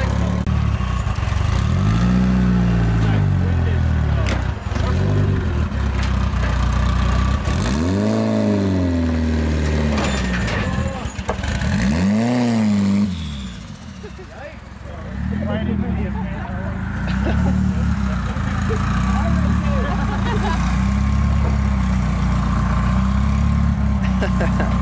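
A car engine idling and being revved, its pitch rising and falling: a few separate revs in the first half, then a quicker run of shorter revs near the end.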